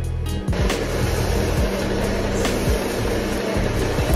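Facial steamer hissing steadily, coming in about half a second in, with background music underneath.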